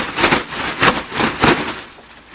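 A barber cape of shiny black fabric being shaken and flapped out, giving a quick run of about five sharp flaps and rustles.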